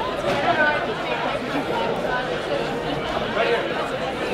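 Many people talking at once in a large room: a steady babble of overlapping conversations with no single voice standing out.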